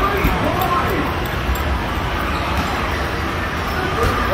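Busy arcade din: a steady low hum of game machines under background voices, with basketballs being shot at an arcade basketball hoop.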